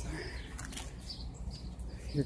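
Faint outdoor background noise with a low steady rumble and a few short, faint high chirps.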